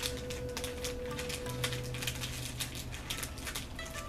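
Plastic snack wrapper crinkling and crackling as it is handled, a rapid run of small crackles, over quiet background music.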